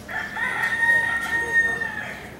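Rooster crowing: one long call held at a steady pitch, lasting almost two seconds.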